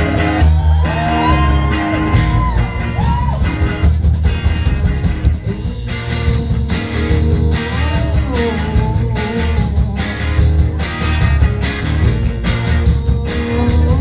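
A garage-rock band playing live, with electric guitars, bass, drums and a woman singing lead, heard from within the audience of a small club. About six seconds in, the drums and cymbals come in harder with a steady beat and the sound turns brighter.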